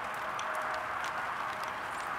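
Steady hiss of falling rain, with scattered light ticks throughout.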